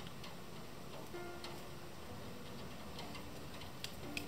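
Light, scattered clicks of a pencil against paper and the desk, the sharpest just before the end as the pencil is set down, over soft background music.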